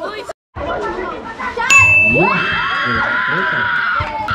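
A sudden sharp metallic clang about halfway through, ringing on with a steady high tone that slowly fades, over crowd shouting and chatter. The sound drops out completely for a moment just after the start.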